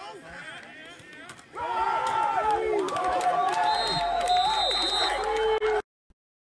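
Loud, excited shouting and cheering from several voices at a football game, breaking out suddenly about a second and a half in after a tackle for loss. It cuts off abruptly near the end.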